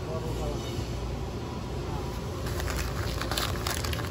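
Plastic bags of dried lentils crinkling as they are handled on a shelf, beginning about halfway through, over a steady low background hum.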